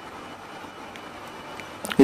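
Steady machinery drone of a ship's engine room, an even noise without distinct strokes or pitch changes.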